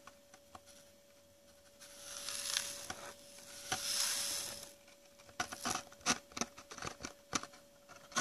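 Small gold flakes and grains poured off a printed card into a plastic gold pan: a hiss of grains sliding for about three seconds, then a run of light clicks and taps as the last pieces drop into the pan.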